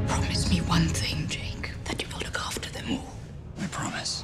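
A whispered voice over low, dark trailer music, breathy with sharp consonant clicks.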